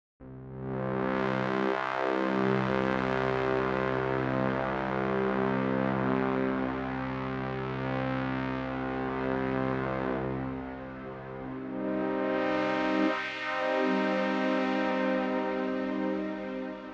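Sustained low-register chords played on a keyboard through the LABS Obsolete Machines sample library, held for several seconds each, with a dip near the middle and a new chord swelling in about twelve seconds in.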